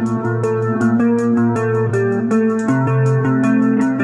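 Background music with a steady ticking beat, a melody of changing notes, and a held low bass note that moves to a new pitch about two-thirds of the way through.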